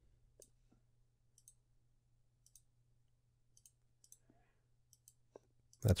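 Faint, irregular clicks from a computer mouse, a few seconds apart, over a faint steady low hum.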